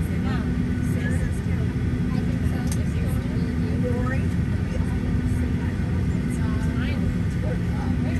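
Steady low hum inside a Boeing 737-800 cabin on the ground, with one even tone running through it, and faint passenger chatter over the top.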